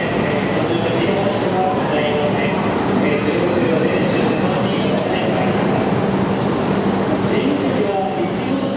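E5-series Shinkansen train pulling out over the station points with a steady running sound, mixed with the voices of people talking on the platform.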